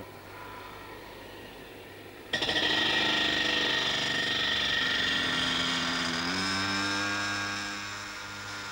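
A 50-pound gyroscope wheel spinning at over 2,000 rpm, brought down onto the floor to stop it. After a quiet start, a loud grinding screech begins suddenly about two seconds in as the spinning wheel meets the floor, its pitch sinking slowly as the wheel slows, easing off near the end.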